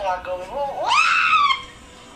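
A person's voice talking, then a sudden, loud, high-pitched scream about a second in that sweeps up in pitch, holds for about half a second and breaks off.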